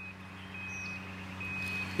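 An electronic beeper sounding a steady high-pitched beep, a little more than once a second, each beep about half a second long, over a steady low hum.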